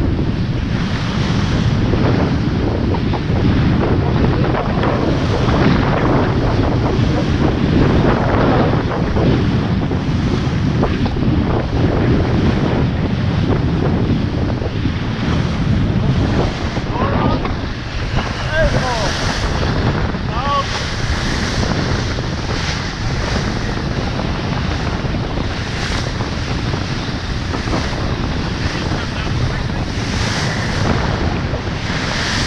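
Steady wind buffeting the microphone over the rush of water and spray along a TP52 racing yacht's hull as it sails through waves.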